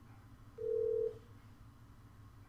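A single steady electronic beep of about half a second from the Blink SIP softphone as the call to the Tropo application connects.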